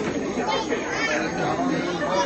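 Background chatter of people talking, several voices overlapping.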